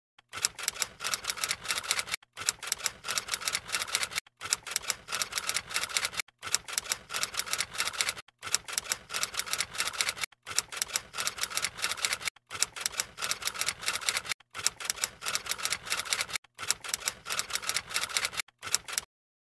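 Typewriter typing sound effect: rapid key clicks in even runs of about two seconds with brief gaps between, a repeating loop.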